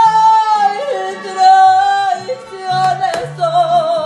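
A woman singing a ranchera, holding long sustained notes with wide vibrato and sliding between them, over acoustic guitar accompaniment.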